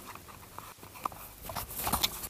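Handling noise from a gloved hand working on a hanging garment close to the microphone: scattered light clicks and rustles, becoming louder and busier in the last half second.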